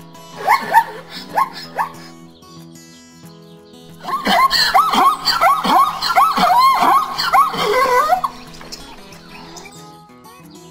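A zebra calling: four short pitched calls in the first two seconds, then a loud run of rapid barking calls, about three a second, lasting some four seconds. Background music with steady sustained chords plays throughout.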